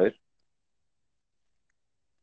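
The last syllable of a man's speech, cut off sharply, then dead silence on the video-call line.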